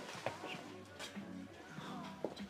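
Quiet background music, with a couple of soft clicks about a quarter-second and a second in.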